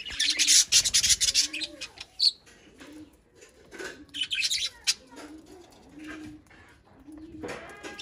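Budgerigars chirping and chattering in short bursts, with a soft low call repeating about once a second underneath.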